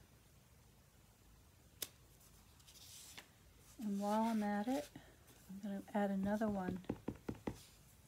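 A woman's voice in two short murmured phrases in the second half. Between them come light crafting noises of a clear acrylic stamp block and card stock being handled on a table: a single sharp tap about two seconds in, a brief paper rustle, and a quick run of clicks near the end.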